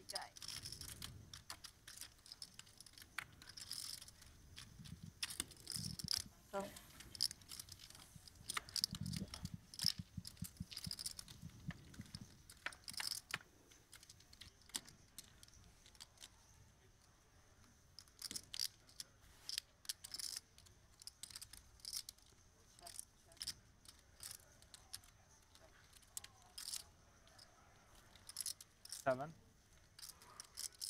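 Poker chips clicking and clattering as players handle their stacks at the table: many short, sharp clicks at irregular intervals, with faint murmured table talk underneath.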